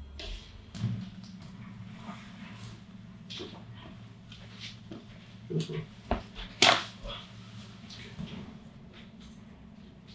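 Chiropractic side-posture adjustment of the low back and pelvis, with one loud, sharp crack from the joint about two-thirds of the way in. A few smaller clicks and rustles come before it.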